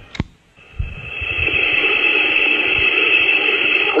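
A sharp click, then a steady hiss over a telephone-line recording that swells up about a second in and holds, between two recorded phone messages.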